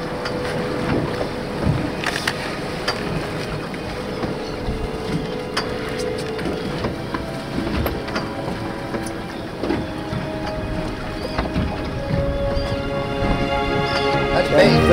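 Sport-fishing boat under way in choppy water: steady engine and water noise, with scattered short knocks.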